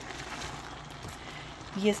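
Steady low hiss of zucchini, potatoes and spinach cooking in a pan.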